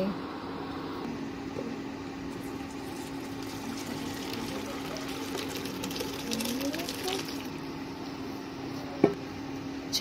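Cooked macaroni and its cooking water poured from a pot into a perforated steel colander, the water splashing and draining through steadily. A single sharp knock near the end.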